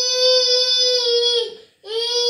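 Toddler crying in long, steady wails: one held cry breaks off about a second and a half in, and another begins just before the end.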